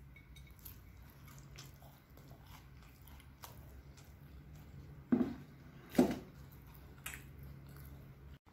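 A person chewing a mouthful of rice and sambal with the mouth closed, soft wet mouth sounds throughout, then two short louder mouth sounds about five and six seconds in.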